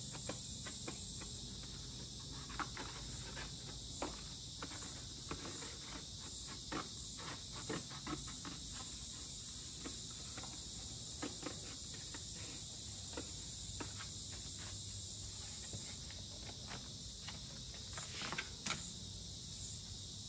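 Scissors snipping through a cereal box's thin cardboard in short, irregular cuts, over a steady high chirring of insects.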